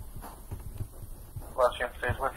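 Brief speech near the end, over a few soft, irregular low thuds.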